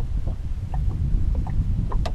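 Wind buffeting the microphone in a steady low rumble, with a few faint light knocks in the boat.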